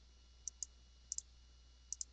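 Three pairs of quick computer mouse clicks, evenly spaced, over a faint steady low hum.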